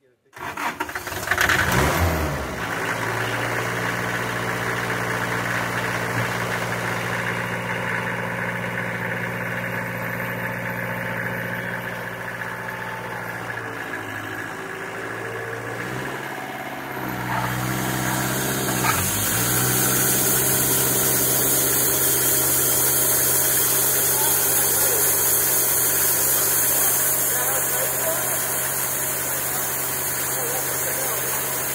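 The homemade bandsaw mill's engine starts about half a second in, surges briefly and settles into a steady idle. About two-thirds of the way through its note wavers, and after that it runs louder with an added hiss.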